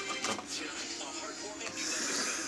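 Television playing in the background: music with a voice over it. A few light clicks come in the first half second.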